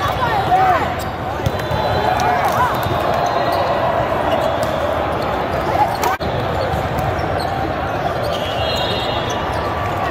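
Indoor volleyball rally: sneakers squeaking on the court surface in short sharp chirps and the ball being struck, over a steady din of voices in a large echoing hall.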